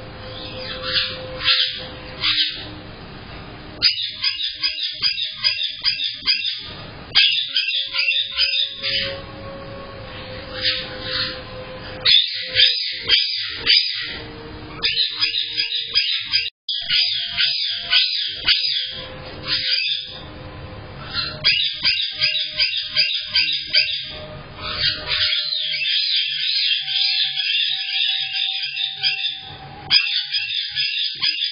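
A flock of caique parrots chattering, with rapid runs of high, repeated squawks and chirps coming one after another. It is heard through a Blink home security camera's microphone, which gives a thin, clipped-top sound, and the audio drops out for an instant about halfway through.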